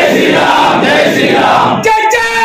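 A crowd of men shouting together in one loud mass of voices, like a slogan cry answered in unison, cutting off sharply near the end.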